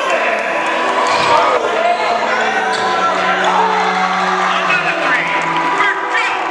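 A basketball bouncing on a hardwood gym floor, mixed with a sustained music bed and a voice.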